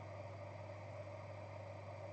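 Quiet room tone: a steady low hum with faint background hiss.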